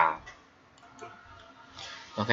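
A pause between spoken phrases: quiet room tone with a few faint clicks around the middle, and a soft hiss near the end.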